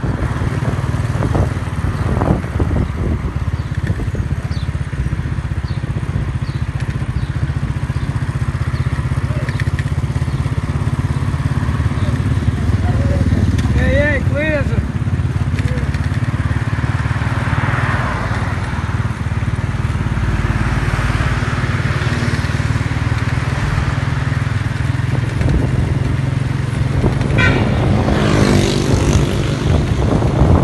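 Steady low rumble of the engine of the vehicle the recording is made from, driving along a street. A short, bending voice-like call comes about halfway through and another near the end.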